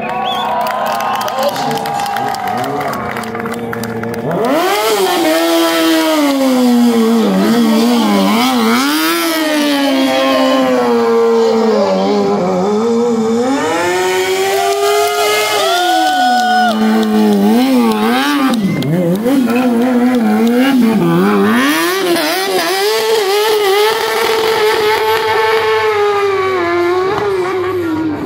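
Sport motorcycle engine revving hard, its pitch swinging up and down again and again as the throttle is blipped and held, getting louder about four seconds in. The rear tyre spins on the asphalt, throwing up tyre smoke, during a stunt burnout and spin routine.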